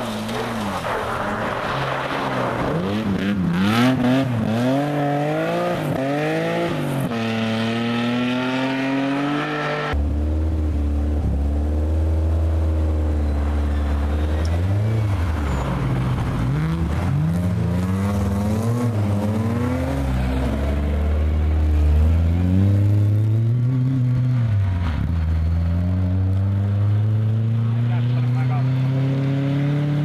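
Rally car engines revving hard one after another, the pitch climbing and dropping repeatedly through gear changes and lifts for the corner. The sound changes abruptly about a third of the way through as one car gives way to the next, one of them a BMW 3 Series (E36).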